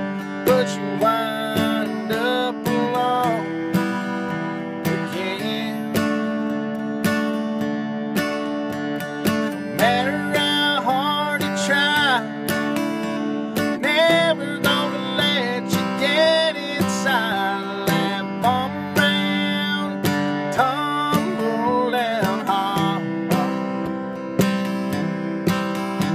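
Acoustic guitar strummed steadily in a country rhythm, with a man's voice singing over it in stretches, inside a car.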